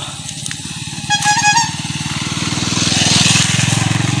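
A motorcycle engine running on the road alongside, growing louder as it comes closer. There is a short, steady high beep about a second in.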